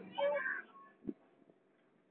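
A month-and-a-half-old baby's short vocal sound, about half a second long, followed by a single soft knock about a second in.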